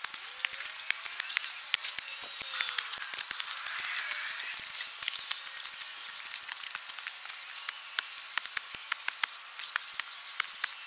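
Soil being worked with a long-handled digging tool in a garden trench: a continuous irregular crackle of crumbling dry soil and small clods, with scattered sharp clicks.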